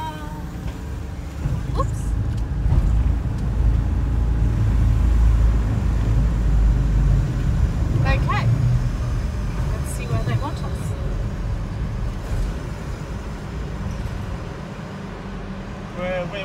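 Low rumble of an RV being driven up a ferry's loading ramp and onto the vehicle deck, heard from inside the cab. The rumble is loudest in the first half and eases off once the vehicle is on the deck.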